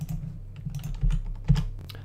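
Computer keyboard typing: a few separate keystrokes, the loudest about a second and a half in, over a steady low hum.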